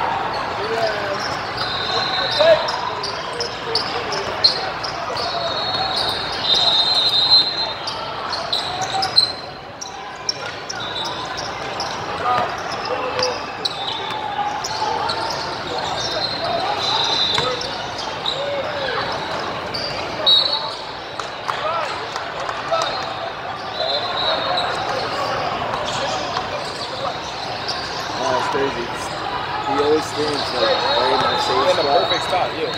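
Indoor basketball game: basketballs bouncing on the court floor, repeated short high-pitched sneaker squeaks, and a steady background of voices from players and spectators, all echoing in a large sports hall.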